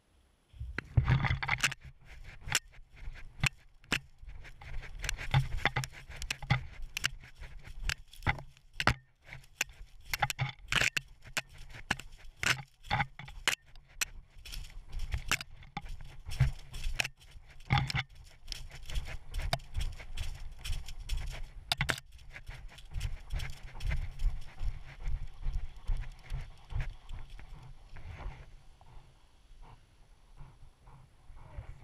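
Tracking dog sniffing and snorting close to the microphone as it works through forest undergrowth, with constant scraping and rustling of brush and fur against the camera.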